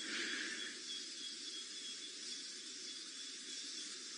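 Faint, steady outdoor night-time background noise, with a thin high steady tone running through it.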